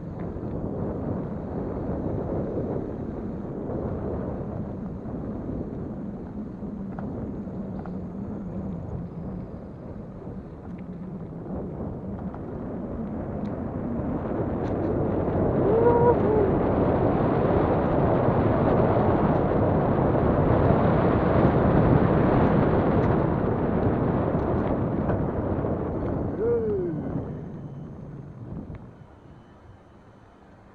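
Wind buffeting the handlebar action camera's microphone, with tyre rumble from a bicycle descending a paved trail at speed. The rumble builds to its loudest around the middle and fades away near the end. There are two short squeals, one about halfway through and one falling in pitch near the end.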